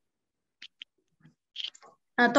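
Faint, brief crackles and ticks of paper sheets being handled and unfolded, a few separate short sounds over an otherwise near-silent line.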